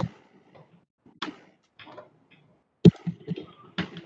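Headset being put on and handled against its microphone: about four sharp clicks and knocks with faint rustling between them.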